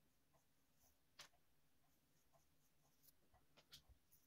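Near silence, with the faint scratching of a small paintbrush laying finish onto bare carved wood and a few soft clicks, the loudest about a second in.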